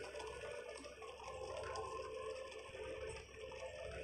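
Faint audio from the drama being watched: a few steady held tones over a low haze, with no speech and no sudden sounds.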